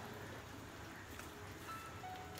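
Faint, steady hiss and patter from a pot of pepper soup simmering on the stove.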